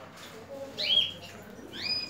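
Canaries giving two short chirps, one just under a second in and a rising one near the end.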